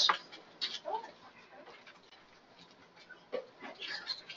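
Quiet pause in a meeting room, with faint, brief voice fragments and a few small clicks and knocks.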